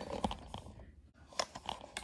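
Camera handling noise as the camera is picked up and carried: a few soft clicks and knocks with faint rustling between them.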